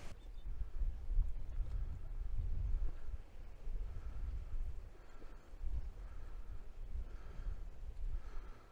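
Wind buffeting the microphone: an uneven low rumble that swells and drops irregularly, with faint outdoor noise above it.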